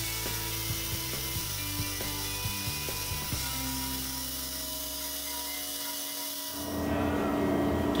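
Pneumatic die grinder running steadily, with a high hiss and a whine, while its bit grinds out the port of an aluminium intake manifold.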